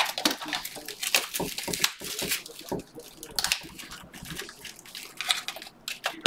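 Small cardboard card boxes and clear plastic wrappers being handled on a tabletop: irregular light taps, clicks and rustles.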